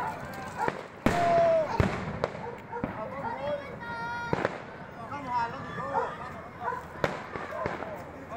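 Fireworks going off in the distance, several sharp bangs at irregular intervals, with a brief whistling tone just before one of them, amid the shouts and chatter of the watching crowd.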